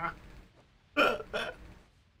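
People laughing: a voiced laugh trails off, then two short breathy bursts of laughter come about a second in.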